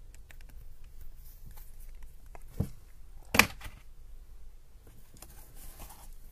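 Art supplies being handled on a paper sketchbook: faint taps and rustles, a soft knock about two and a half seconds in and a sharper, louder clack about a second later.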